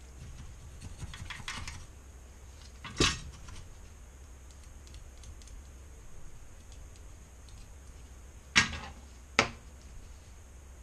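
Small tools and parts being handled on an electronics workbench: a soft rustle, then sharp clicks of small hard objects against the bench, one about three seconds in and two close together near the end.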